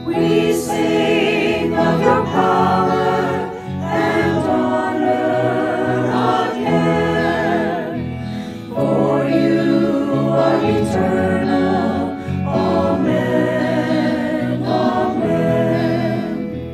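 A mixed choir of men and women singing a slow hymn in held notes, the verse 'We sing of your power and honour again, for you are eternal. Amen. Amen.'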